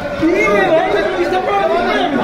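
Several people talking over one another in a crowded press scrum, a jumble of overlapping voices.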